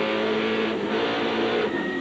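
In-car sound of a NASCAR All-Pro stock car's V8 engine running hard at racing speed, a loud, steady engine note that shifts slightly in pitch partway through.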